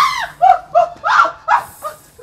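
A woman's short, high-pitched cries in rapid succession, about six in two seconds, loud and frantic.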